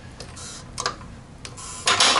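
Craftsman 3-ton hydraulic floor jack being pumped rapidly by its long handle with the release valve open, to purge trapped air from the hydraulic system. The pump mechanism and handle give a few metallic clicks and clacks, with the loudest clack near the end.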